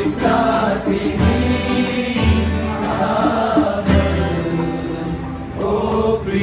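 A group of voices singing a Nepali pop song together in chorus, accompanied by several strummed acoustic guitars.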